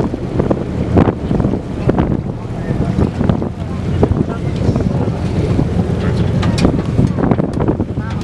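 Wind buffeting the microphone in uneven gusts on the open deck of a tour boat, over a low rumble of the boat moving through the water.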